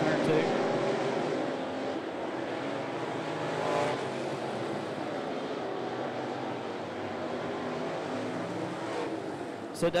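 A pack of dirt-track race car engines running at speed around the oval, with a louder swell as cars pass about four seconds in.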